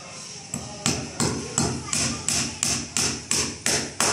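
Small wooden-handled hammer driving a nail into the frame of a solid wood door: a run of sharp, even strikes, about three a second, starting just under a second in.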